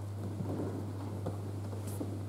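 Steady low hum under soft rustling and shuffling noise, with a few faint knocks.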